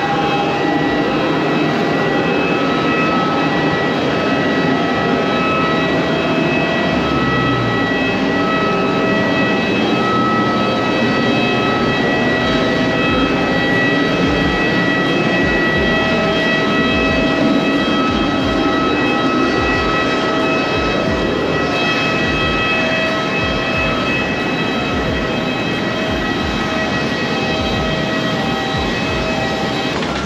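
Jet airliner whine on the airport apron: a steady rush of engine noise with several high, held tones over it, and irregular low thumps underneath.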